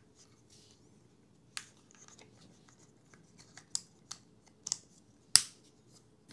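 Scattered small clicks and taps of hard plastic as a case part is fitted over a DJI Osmo Pocket camera, with a sharper, louder click about five seconds in.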